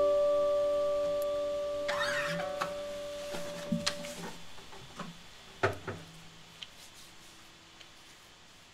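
The song's final chord, played on electric guitar, bass and keyboard, held and slowly dying away, one note ringing on for about four seconds. A few soft clicks and knocks follow as the sound fades.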